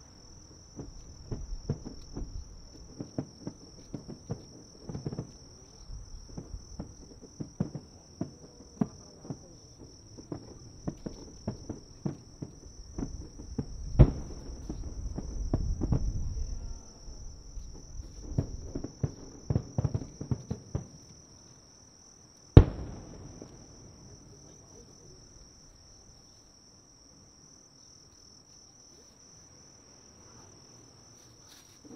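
Aerial firework shells of a starmine barrage bursting in rapid, irregular succession, with a big boom about 14 seconds in followed by a low rumble, then one last very loud bang with a rolling echo about two-thirds of the way through before it goes quieter. Crickets chirp steadily throughout.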